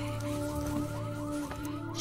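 An electronic alarm sounding in a film soundtrack: short swooping chirps repeating about five times a second over steady, held low tones.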